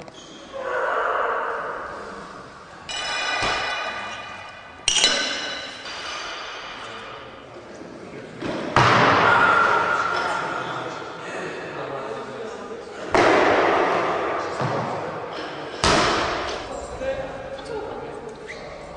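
A loaded barbell with bumper plates dropped onto a lifting platform again and again, about six crashes that each ring and die away slowly in a large, echoing hall. After the second and third crashes the metal rings with a clear tone.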